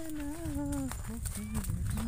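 A man's voice making long wordless sounds: a drawn-out gliding call that falls away and stops just under a second in, then a steady, lower held note. Low wind rumble on the microphone lies underneath.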